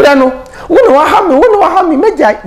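A man's voice speaking animatedly, its pitch high and sliding up and down.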